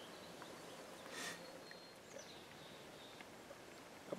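Very quiet outdoor ambience of faint hiss, with a brief soft whoosh about a second in and a few faint high chirps.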